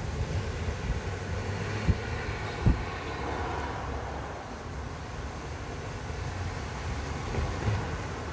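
Steady low outdoor background rumble, with two short thumps about two and three seconds in.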